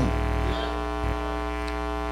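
Steady electrical mains hum and buzz: a low drone with a ladder of even overtones, unchanging throughout.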